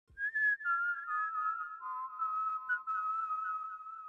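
A whistled melody: a few notes stepping down in pitch, then settling on a longer held note.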